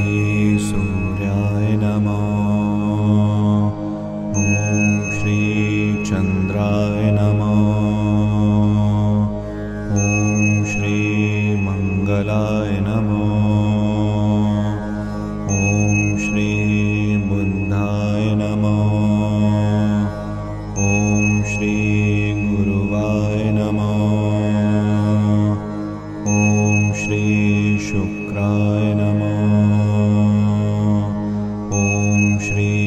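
A devotional mantra chanted over a steady low drone. The chant runs in a cycle that repeats about every five and a half seconds, and each cycle opens with a high, held bell-like tone.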